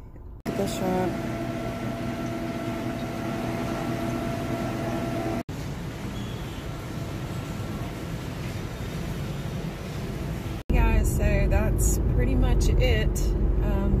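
Indoor shop ambience with a steady hum and a few steady tones. After a sudden cut about eleven seconds in, the low road rumble of a car's cabin while driving, with a woman talking over it.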